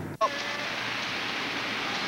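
Steady hiss of road and traffic noise inside a moving taxi cab, beginning abruptly just after a cut.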